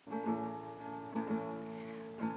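Acoustic guitar strumming chords: the first strum comes in suddenly at the start, a second follows about a second later, and the chords are left ringing.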